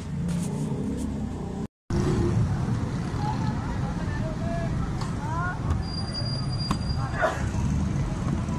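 Steady low rumble of street traffic with background voices, broken by a brief dropout about two seconds in; a faint thin high tone sounds about six seconds in.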